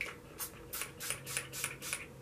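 Fine-mist pump spray bottle of argan oil shine mist spritzing onto a section of hair: a quick run of about six short hissing sprays, one after another.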